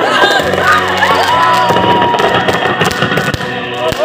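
Loud music mixed with a group of people shouting and cheering, while firecrackers crackle and pop with scattered sharp cracks.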